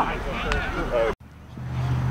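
Shouting voices, cut off abruptly a little over a second in. After a short dip, a steady low hum comes in.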